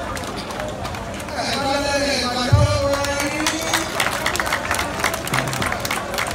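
A man's voice singing a native Yoruba song into a microphone over a crowd, with long held notes about a second and a half in. Scattered handclaps and crowd noise run underneath.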